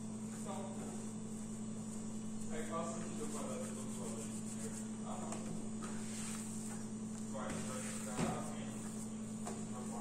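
A steady low hum with faint, indistinct voices in the background, and a single soft knock about eight seconds in.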